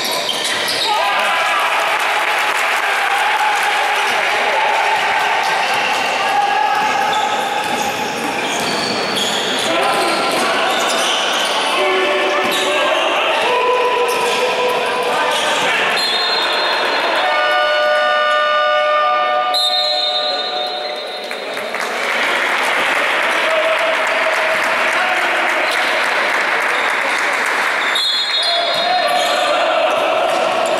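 Basketball game sounds in a reverberant sports hall: a ball bouncing on the court floor with voices calling out, and a few seconds of steady, multi-pitched tone a little past the middle.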